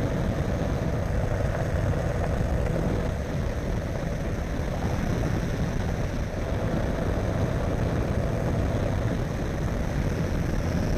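An ultralight trike's engine and pusher propeller drone steadily in flight, with no change in pitch or level.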